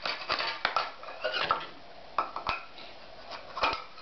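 Irregular clattering knocks of a toddler banging a plastic spatula and wooden bowls together and against a glass tabletop, in uneven bursts with short pauses between.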